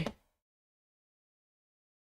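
The last word of a short spoken phrase, then the sound cuts off suddenly to total silence.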